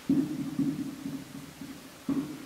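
Felt-tip marker writing on a wall-mounted whiteboard, the board giving a low rumble as the pen is pressed and drawn across it. The rumble starts suddenly and runs unevenly for about a second and a half before fading.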